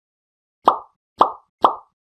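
Three short cartoon-style pop sound effects, about half a second apart, starting a little under a second in.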